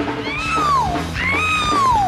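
Live rock band music in which a woman's high voice sings two long sliding notes, each about a second long, each rising and then falling in pitch, over a steady bass.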